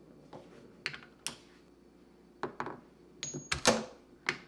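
A chain-reaction machine of wooden track and plastic construction-toy parts running, with a string of light clicks and knocks as balls roll and parts trip. A louder knock comes near the end.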